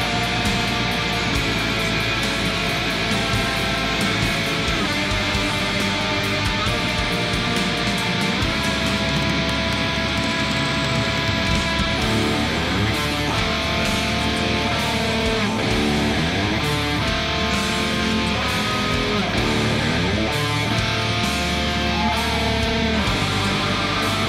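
Distorted electric guitar, an ESP LTD tuned to D standard, playing fast black metal riffs over a full band track with drums and bass, with sliding notes in the second half.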